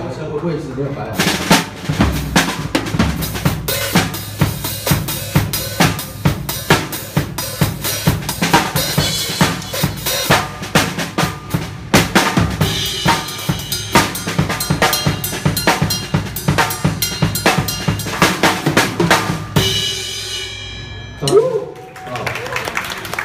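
Acoustic drum kit played fast and hard: snare, bass drum, toms and Paiste cymbals in a dense beat with rolls. Near the end the beat stops and the cymbals ring out, followed by one last hit.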